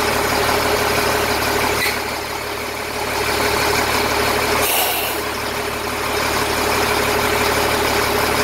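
Turbo-diesel engine of an LMTV military truck idling steadily. About five seconds in comes a short hiss of escaping air as air is let out of the cab air-ride bags.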